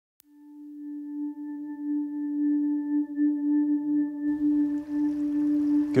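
Singing bowl ringing: one long steady tone with faint overtones that swells in over the first couple of seconds and keeps sounding. Background noise joins about four seconds in.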